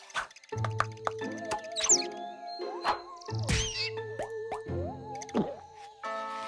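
Cartoon slapstick score with comic sound effects: a run of short pops and clicks over wavering held notes, cut through by several quick rising and falling pitch glides.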